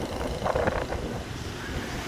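Street traffic with motorbikes passing, heard as a steady low rumble that swells briefly about half a second in.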